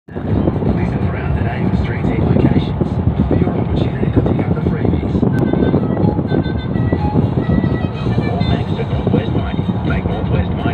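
Steady road and tyre rumble with fluttering wind noise inside a car's cabin at highway speed. Voices or music are faintly audible over it.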